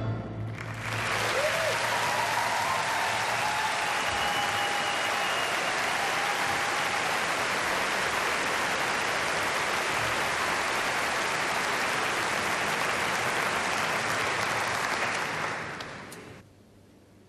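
A concert audience applauding, the clapping swelling in about a second in, holding steady, then dying away near the end.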